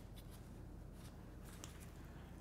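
Quiet low room hum with a few faint clicks from a hand handling the depth stop of a plunge router.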